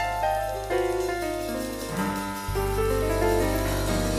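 Live New Orleans funk and blues band playing an instrumental intro, led by piano: a run of notes steps downward over a held bass note that changes pitch about halfway through.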